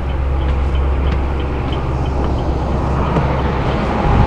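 Chevrolet Duramax 6.6-litre turbo diesel engine idling, a steady low drone with faint regular ticking above it.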